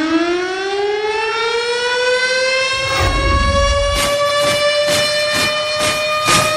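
An air-raid siren sound effect winding up, its wail rising in pitch and levelling off into a steady high note. A low boom comes about three seconds in, and a fast, regular drum beat joins from about four seconds.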